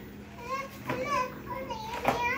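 A young child's high-pitched voice, making about three short wordless calls that rise and fall.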